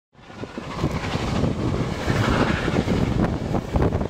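Rolling rumble and clatter of a moving passenger train heard from a car partway back, with wind buffeting the microphone held out the side; it fades in over the first second.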